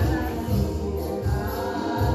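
Two women singing together into handheld microphones over backing music with a steady beat of about two pulses a second.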